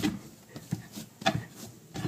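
Hands shaping bread dough on a wooden cutting board: faint handling and rubbing noise with a couple of soft knocks around the middle.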